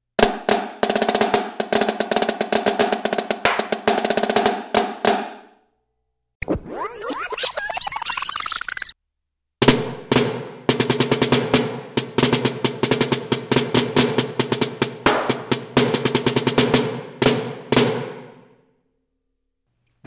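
Marching snare drum played with sticks: a fast rudimental lick of accented strokes, flams and diddled rolls, played twice, the first take about six seconds long and the second about nine. Between the two takes there are a couple of seconds of a different, hissy sound with a rising tone.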